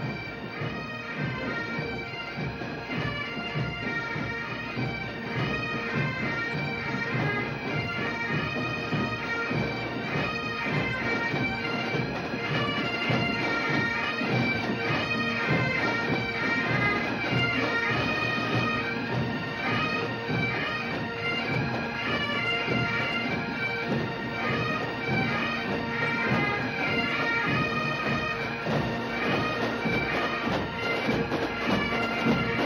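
Massed Highland pipe bands playing: many Great Highland bagpipes sounding a steady drone under the chanter melody, with drums marking the beat. The sound swells in over the first few seconds, then holds loud and steady.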